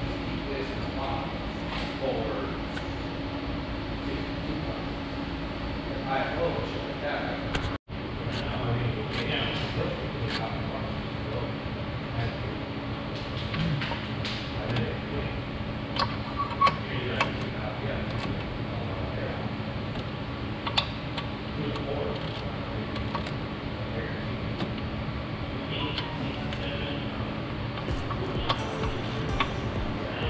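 Workshop background of steady hum, faint voices and music, with scattered short metallic clicks from hand tools working on an engine.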